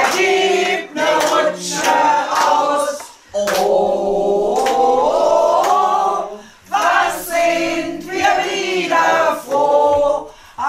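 A group of men and women singing together in chorus, apparently unaccompanied, with one long held note in the middle.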